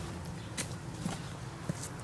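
Faint footsteps in leaf litter, with a few light crunches and snaps, over a low steady background rumble.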